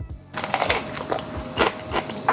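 Chewing a bite of firm golden melon with its rind on: a few crisp, wet crunches between the teeth.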